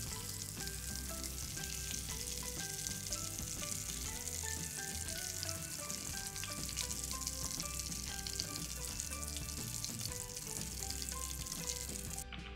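Breaded fish sticks frying in hot oil in a pan: a steady sizzle with crackles throughout, as they are turned with a spoon and tongs. Background music plays underneath.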